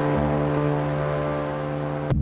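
A held musical note or chord pushed through iZotope Trash Lite's distortion, ringing steadily under a thick noisy hiss. A gritty low rumble joins it just after the start.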